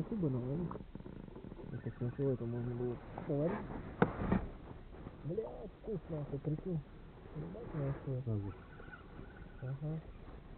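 Muffled, indistinct voices talking in short phrases, with one sharp click about four seconds in.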